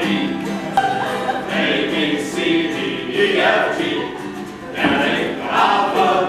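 A small group singing together to an acoustic guitar.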